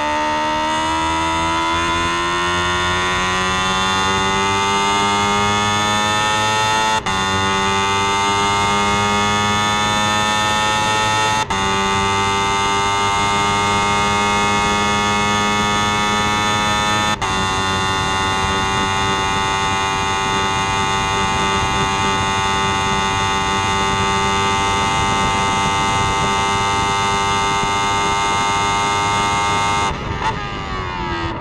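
Single-seater race car engine heard onboard, accelerating hard through the gears: the pitch climbs, with quick upshifts about 7, 11 and 17 seconds in that each briefly drop it, then holds nearly steady at high revs.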